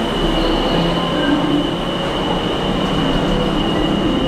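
Disney Skyliner gondola station machinery running: a steady mechanical rumble with a constant high-pitched whine as the cabins move through the station.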